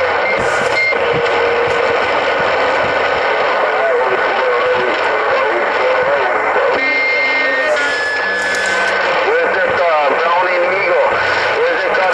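HR2510 10-meter transceiver receiving on 27.085 MHz: steady loud hiss of band noise with garbled, unintelligible voices from distant stations talking over one another, and a few short whistling tones.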